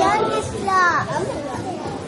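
Children's high voices calling out answers in a room, the loudest call about three-quarters of a second in.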